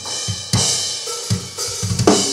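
Recorded drum kit played back over studio monitors: a ringing cymbal wash over kick-drum hits, with a cymbal crash about half a second in.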